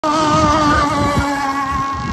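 Radio-controlled sport hydro racing boat running at speed. Its motor makes a steady high-pitched whine that dips slightly in pitch and fades a little.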